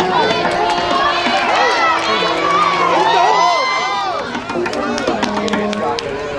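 Football spectators cheering and shouting during a play, many voices overlapping, with scattered sharp claps.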